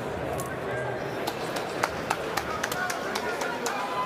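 Boxing arena crowd: steady chatter of many voices with a few brief shouts and scattered sharp clicks.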